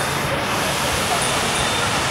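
Steady rush of water from Buckingham Fountain's jets splashing into its basin, an even noise with no breaks.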